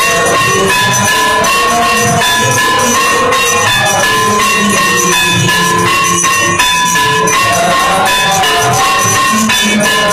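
Temple aarti music: metallic ringing and shaken percussion over a repeating melody, loud and unbroken.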